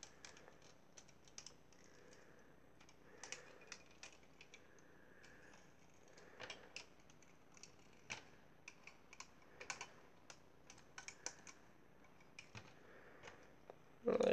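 Faint, irregular clicks and taps of plastic LEGO and Bionicle parts being handled, as the figure's wings are pressed onto their studs.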